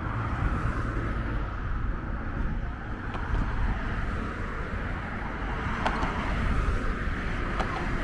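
Steady road traffic noise from cars on the roadway beside the walkway, with a low rumble underneath.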